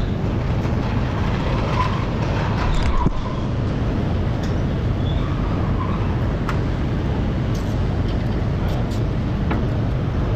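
Steady low workshop background rumble, with a few sharp light clicks and taps of hand tools on the front suspension parts.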